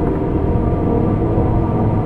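Dark ambient drone music: a dense, steady low rumble with sustained tones held above it.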